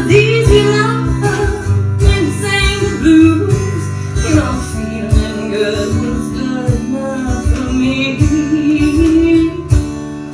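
A woman singing with her own strummed acoustic guitar accompaniment.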